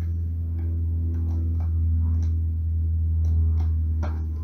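Background music bed: a steady low drone with sustained tones, and a few light ticks scattered through it.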